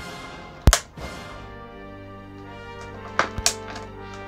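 Hand cutters snipping through wire twist ties: one sharp snip about two-thirds of a second in and a couple more near the end, over steady background music.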